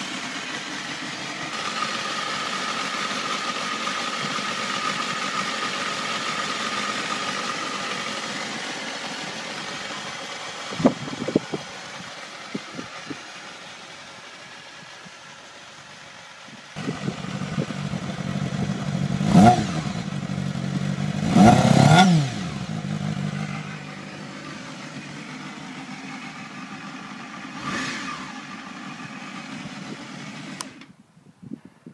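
Honda Hornet 250's small inline-four engine idling steadily, with a few sharp knocks about eleven seconds in. About two-thirds of the way through it is revved twice in quick succession, pitch rising and falling, the second rev longer. A smaller blip follows near the end.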